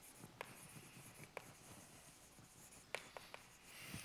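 Chalk writing on a blackboard: faint scratching with a few sharp taps of the chalk, one about half a second in, another about a second later, and a quick run of three about three seconds in.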